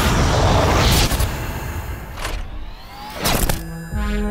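Rocket-engine roar from trailer sound design, loud for the first second and then dying away, followed by several sharp booming hits, with music underneath.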